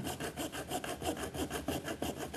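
Small hand hacksaw sawing with quick, even back-and-forth strokes, cutting a short slot of about a centimetre.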